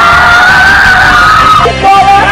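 A man yelling in one long held shout over loud background music, the shout breaking off near the end.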